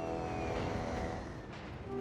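Background score of held notes with a faint falling slide in the upper register, over a low rumble.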